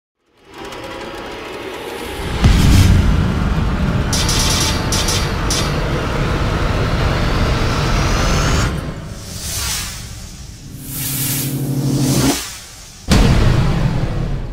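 Cinematic logo-intro music and sound effects: a swell rising out of silence, a deep boom about two and a half seconds in, then a sustained rumbling bed with shimmering high sweeps. It fades and swells again before a second sharp hit near the end.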